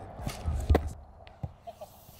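A football being fired from a two-wheel passing machine and bouncing on grass: a few short thumps in the first second and a half, the loudest just under a second in.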